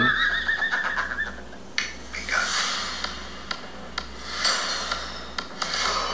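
A man's high-pitched laugh, a wavering squeal lasting about a second and a half. Then quieter movie-trailer sound with scattered clicks and a couple of whooshes.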